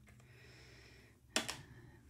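Faint handling of a plastic MIDI pad controller and its cable, with one sharp click about a second and a half in.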